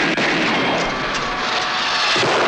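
A loud, steady roaring noise, with no distinct shots in it.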